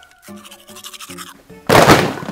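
Soft background music, then near the end a sudden loud crash lasting under half a second: a staged sound of a child falling offscreen.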